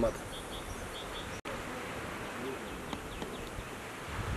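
Outdoor ambience with an insect buzzing. The sound cuts out for an instant about a second and a half in.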